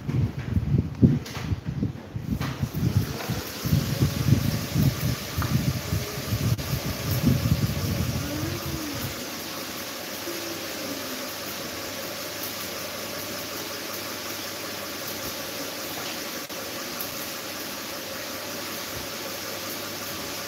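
Electric fans running: a steady rush of air with a faint motor hum. For roughly the first nine seconds an irregular low rumble of moving air buffets the microphone, then it settles into the even whoosh.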